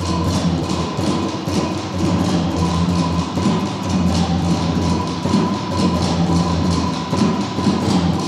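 Drum ensemble playing a fast, even rhythm: a djembe struck by hand together with snare drums played with sticks.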